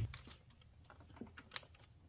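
A few faint, sharp clicks of brass quick-connect fittings on an oil pressure test hose being handled and wiggled by hand, the sharpest about one and a half seconds in.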